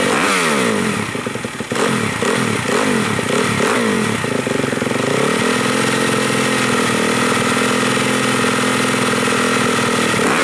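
Yamaha YZ250F four-stroke single-cylinder motocross engine revved on the stand, the throttle blipped in several quick rises and falls, then held at a steady speed for the second half.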